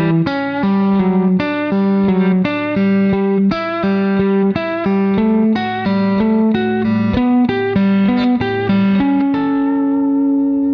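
Clean electric guitar, a Fender Telecaster, playing a quick country double-stop sequence as triplets, pulling off to the open third string as it moves up the neck. About nine seconds in it ends on a held chord that rings out.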